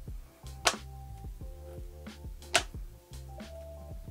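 Soft background music, with two sharp clicks about two seconds apart: a MagSafe flip wallet snapping magnetically onto the back of a phone.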